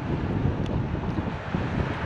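Wind buffeting the microphone outdoors: a steady, fluttering low rumble.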